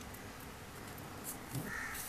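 Quiet paper handling as folded origami paper is pressed and creased by hand, with one short bird call near the end.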